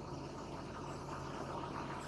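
Faint marker-on-whiteboard writing strokes over steady low room hum and hiss.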